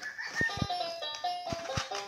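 Electronic toy melody from a plastic toy farm barn's speaker, a simple tune of short steady notes, with a few light plastic knocks in between.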